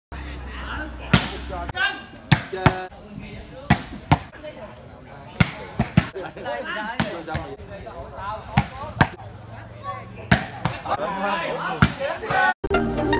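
A volleyball being struck by players' hands during rallies: about a dozen sharp slaps at irregular intervals, with players and onlookers shouting.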